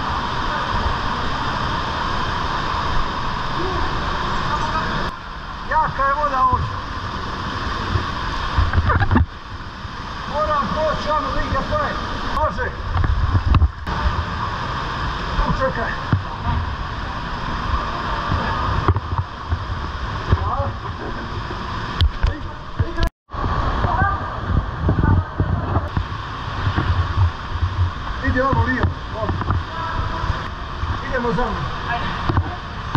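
Steady rush of a fast, swollen mountain stream through a narrow rock canyon, with people's voices calling indistinctly over it. Low thumps come and go, and the sound cuts out completely for a split second about two-thirds of the way through.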